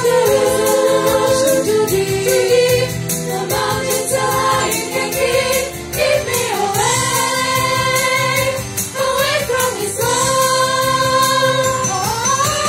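Girls' choir singing in unison and harmony, with held notes and sliding phrases, over an accompaniment with a steady beat.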